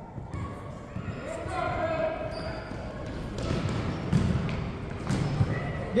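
Gymnasium sound during a youth basketball game: distant voices of players and spectators in an echoing hall, with a basketball bouncing on the hardwood floor, a few sharp knocks in the second half.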